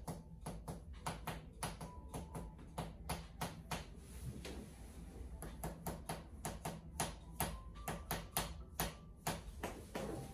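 Sharp taps from a handheld percussion mallet striking the body, about three a second and slightly uneven, with a short lull about halfway through.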